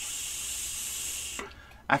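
A draw on an Aspire Nautilus X mouth-to-lung tank with its airflow fully open: a steady, airy hiss of air pulled through the airflow holes, lasting about a second and a half before it stops.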